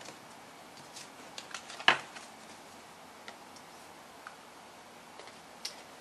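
Tarot cards being handled and laid on a table: scattered light clicks and taps, with one sharper snap about two seconds in.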